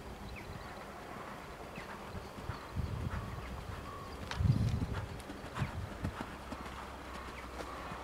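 Horse's hoofbeats at a canter on a soft arena surface: irregular dull thuds and knocks, the loudest about halfway through.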